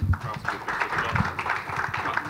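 A handheld microphone knocks down onto a table, followed by scattered clapping and voices.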